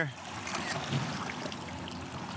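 Steady wash of water lapping and trickling against a small boat's hull.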